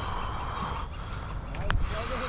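Splashing and rustling as a hooked largemouth bass is grabbed and lifted out of shallow, reed-choked water, loudest in the first second. A single sharp click comes near the end.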